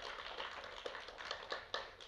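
Audience applauding, fairly faint, with a few sharper single claps standing out from the patter.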